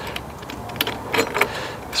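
Scattered small metallic clicks and rattles from a solar street light's metal pole-mount bracket and its screws as they are tightened by hand onto the pole.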